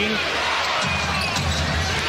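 Basketball arena crowd noise during live NBA play, with the ball being dribbled on the hardwood court.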